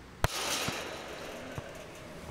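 A football strikes the goal's mesh with a sharp bang, followed by a rattling ring from the mesh that fades over about a second. Two light knocks come after it.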